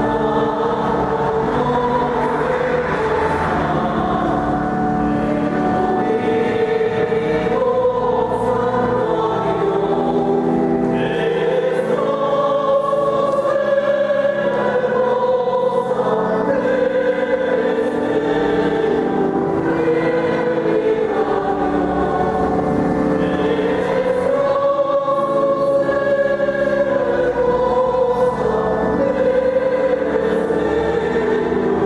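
Choir singing a religious song, with long held notes at a steady level.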